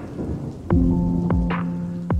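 Background electronic music: held synth chords over deep kick-drum hits that drop sharply in pitch, with clap-like hits between them.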